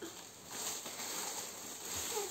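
Faint crinkling and rustling of plastic shrink-wrap film as a child's hands pull and tear at it around a pack of toilet-paper rolls.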